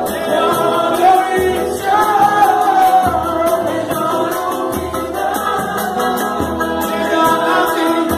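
Pagode: several voices singing a melody together over samba percussion, with low drum notes and a quick, even ticking rhythm above.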